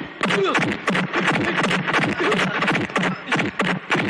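Film fight-scene soundtrack: rapid punch and hit sound effects, several a second, with grunts and shouts over background music.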